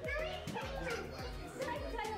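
Young children's voices and chatter over background music with a steady deep beat, about two to three beats a second.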